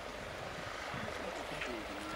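Distant Boeing B-52H Stratofortress, its eight TF33 turbofan engines giving a steady rumble as it flies a curved approach, growing slightly louder. Faint voices sound underneath.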